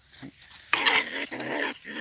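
A trapped ferret-badger giving a harsh, rasping defensive call for about a second, starting just under a second in: the threat noise of a fierce, cornered animal.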